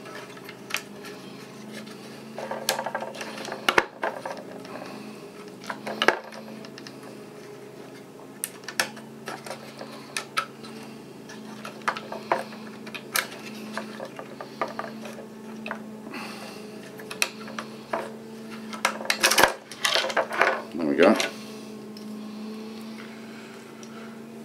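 Plastic push-pin clips of an Intel stock CPU cooler being twisted and pulled free of a motherboard: scattered sharp clicks and snaps with handling knocks, over a steady low hum. A brief falling whir sounds near the end.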